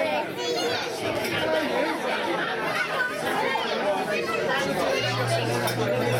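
Chatter of several overlapping voices, with no single speaker standing out. About five seconds in, a steady low hum joins the voices.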